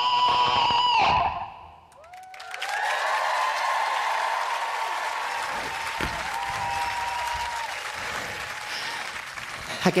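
Electric guitar holding a sustained final note that cuts off about a second in, followed by the audience applauding and cheering.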